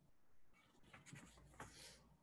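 Near silence, with faint rustling or scratching from about half a second in until near the end.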